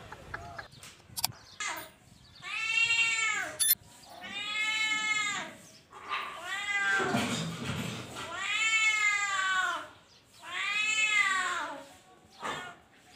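A tabby-and-white kitten meowing five times, each meow about a second long, rising then falling in pitch, with a second or so between calls.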